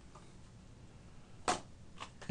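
Faint room tone, broken about one and a half seconds in by a single short, sharp knock or click.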